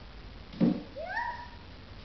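A sudden thump about half a second in, then a short high cry that rises in pitch and levels off briefly.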